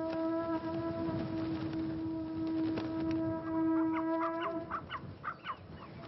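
Soundtrack music: a long, steady horn-like wind-instrument note that breaks off about four and a half seconds in, followed by a quick run of short rising chirps, over a low rumbling noise.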